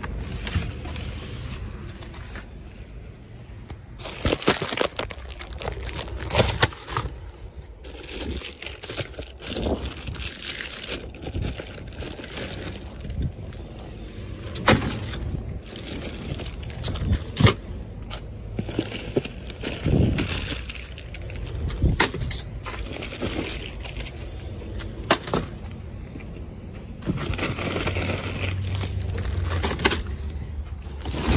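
Plastic bags, snack wrappers and a cardboard box crinkling and rustling as packaged snacks are rummaged through by hand, with irregular sharp crackles and knocks. A steadier low rumble comes in near the end.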